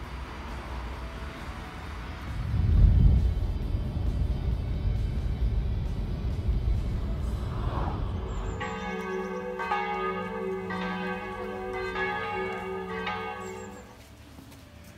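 Road noise of a moving car, a low rumble that is loudest about three seconds in. About eight seconds in, church bells start ringing, a new stroke about every second, each one ringing on under the next.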